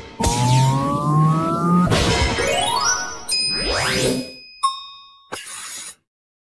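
Electronic, pitch-shifted sound effects: runs of rising tones and fast upward sweeps, then a bright ding that rings out about four and a half seconds in, followed by a short burst of noise that cuts off suddenly.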